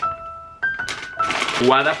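Two held musical notes, the second a little higher than the first, over the crinkle of gold wrapping paper being torn open; a man's voice comes in near the end.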